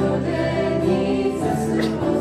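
Youth choir singing a hymn in a quickened arrangement.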